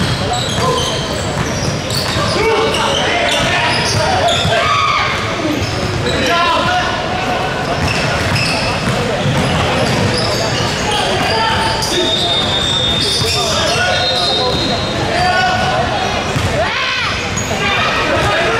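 Basketball game in a large, echoing gym: a basketball bouncing on the hardwood floor, with players' voices calling out. A brief high squeak is heard a little past the middle.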